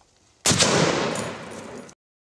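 A single sudden bang, a sound effect on an animated intro, about half a second in. Its noisy tail fades over about a second and is cut off abruptly near the end.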